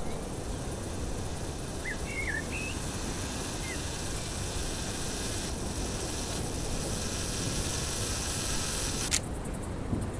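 Outdoor field ambience: a steady hiss of wind-like noise with a few short bird chirps about two seconds in and again a little later, and one sharp click near the end.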